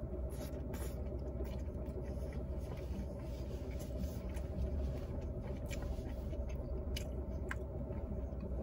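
A man chewing a mouthful of sausage in a bun, with a few faint wet mouth clicks near the start and again near the end, over a steady low rumble inside a parked car.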